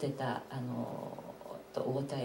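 Speech: a person talking in Japanese over the hall microphone.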